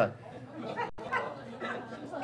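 Faint, indistinct chatter of several people talking quietly in a room, with a brief dropout in the recording a little under a second in.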